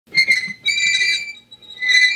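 Wheels of a rusty pressed-steel Nylint toy pickup squealing as it is pushed along: a high, steady, whistle-like squeal in three bursts, the middle one the longest.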